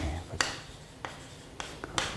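Chalk writing on a chalkboard: light scratching strokes broken by several sharp taps as the chalk strikes the board.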